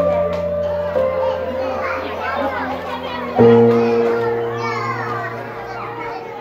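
Background music of slow, held keyboard chords, each fading away, with a new chord coming in about three and a half seconds in; young children's voices chatter over it.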